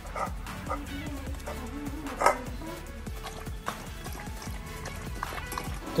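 A golden retriever eating wet food from a bowl, its chewing and lapping making many small clicks and knocks, with one sharper knock a little over two seconds in. Background music plays underneath.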